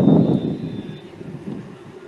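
Wind buffeting the radio broadcast microphone: a low rumble that dies down over the first second, leaving a quieter steady rush.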